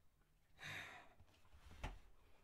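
A man's sigh: one breathy exhale lasting about half a second, followed near the end by a short knock.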